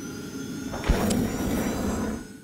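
Logo-sting sound effects: a swelling whoosh, then a deep hit about a second in with a bright swish on top, ringing on afterwards.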